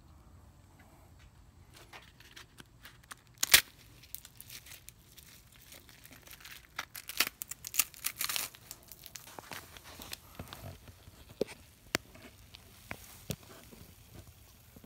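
Faced insulation and wax comb being torn and pulled down by hand, with crackling and rustling and one sharp knock about three and a half seconds in.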